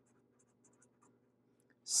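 Sharpie fine-point marker writing on paper: a series of short, faint strokes of the felt tip across the page.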